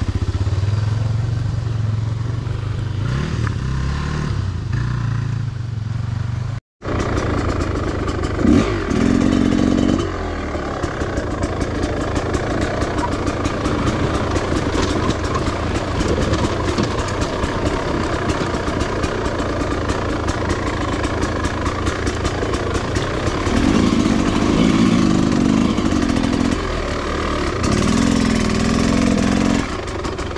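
Dirt bike engine running while riding down a rough wooded trail, with short bursts of throttle a few times. The sound cuts out for a moment about seven seconds in.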